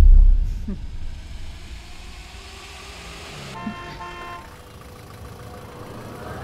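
A deep boom at the start fades over about a second into the steady noise of street traffic. A vehicle horn sounds once, briefly, a little past the middle.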